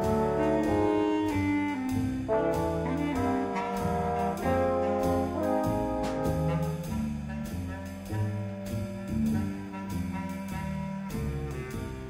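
Live small jazz band: trumpet and two French horns playing a melody in harmony, with bass clarinet, upright bass and a drum kit keeping a steady beat.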